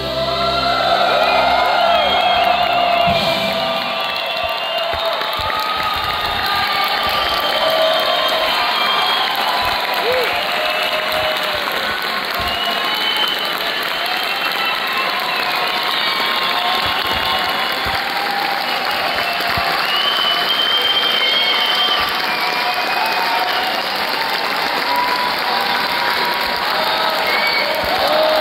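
A symphony orchestra's final chord dies away in the first few seconds. Sustained audience applause follows, with cheering and whistles.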